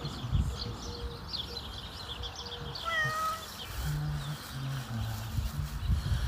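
A domestic cat meows once, briefly, about three seconds in, with birds chirping in the background.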